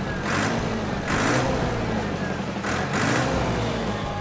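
Heavy-vehicle engine sound with a steady low rumble and a few hissing surges spaced about a second or more apart.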